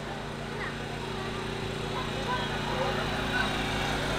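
Faint murmur of voices in the background over a steady low hum, with no music playing.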